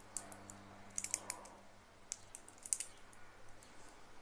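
Faint, light clicks of a Tudor Ranger 79950's three-piece-link steel bracelet as the watch is turned in the hands, in small clusters about a second in and again near three seconds in.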